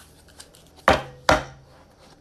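Two sharp knocks about a second in, less than half a second apart: a deck of cards being knocked down against a wooden tabletop.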